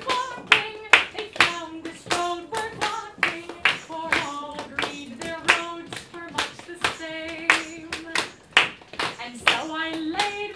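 A live folk song: a voice singing a melody while hand claps keep a steady beat of about two claps a second.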